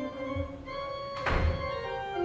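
Pipe organ playing sustained chords, with a single loud thump about a second and a quarter in.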